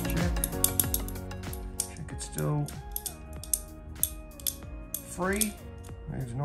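Background music with steady held tones, over many small sharp clicks of metal RC-helicopter tail-gearbox parts and a hex driver being handled and fitted together.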